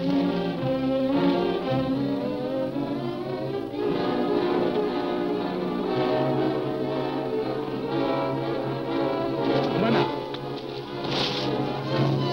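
Orchestral film score with brass playing sustained, shifting chords as dramatic underscore.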